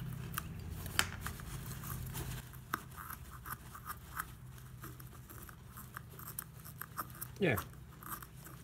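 Razor blade scraping and picking old foam double-stick adhesive off the plastic back of a small blind spot mirror, then fingertips rubbing and peeling the leftover residue: a run of faint, irregular scratchy clicks.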